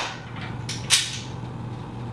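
Metal clanks of a steel rack arm being fitted against the steel tower post: a light clank and then a sharper, louder one about a second in, over a steady low hum.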